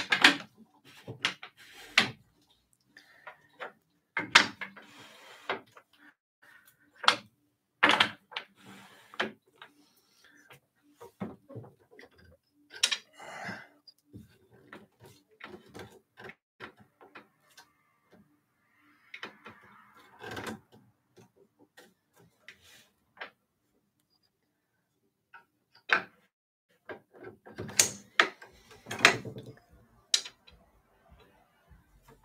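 Wooden tama bobbins clacking and knocking against each other and the wooden rails of a takadai braiding stand as threads are passed over and under. The knocks come in irregular clusters, with a short lull about three quarters of the way in.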